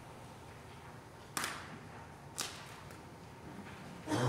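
Two sharp snaps about a second apart, near the middle: a large communion wafer, the priest's host, being broken at the fraction of the Eucharist.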